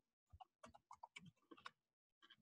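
Near silence with a quick irregular run of faint clicks and ticks, about eight small ones across two seconds.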